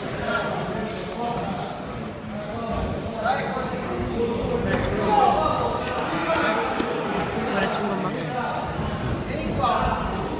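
Several voices shouting and talking over one another around a kickboxing bout, with a few short thuds from blows landing.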